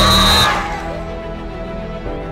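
A shrill referee's whistle blast and shouting voices at a youth football game in the first half second, cut short. Background music with sustained tones carries on after it.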